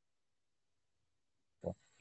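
Near silence on a video-call line, broken near the end by a brief voice sound as someone starts to speak.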